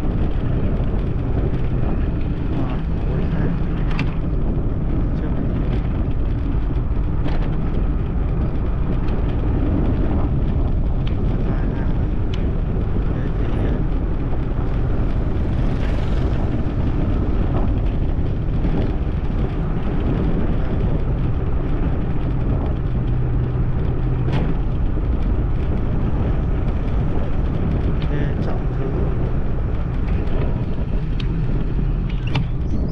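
Steady low rumble of a ride along a road, with wind on the microphone and a few scattered knocks from bumps.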